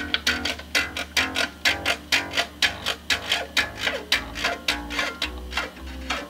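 Rickenbacker 4001 electric bass strings plucked in a quick, even run of notes, about four a second, each with a sharp, bright attack. The notes are played to show how the bass plays with a hump in the neck on the bass side.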